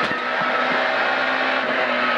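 Peugeot 106 A5 rally car's engine running at a steady pitch under way, heard from inside the cabin over road noise.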